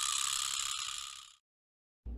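An even, high hiss from the animated intro's sound effects, fading out a little past a second in, then dead digital silence.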